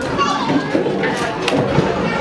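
Young children's voices chattering and calling over one another during play, with a few light clicks and knocks.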